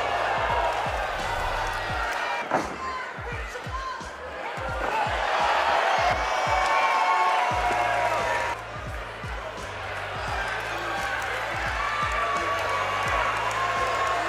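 Background music with a steady bass beat, with voices over it.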